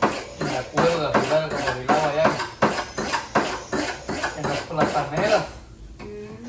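Kitchen knife chopping vegetables on a cutting board, a run of short sharp taps, with a voice talking over it.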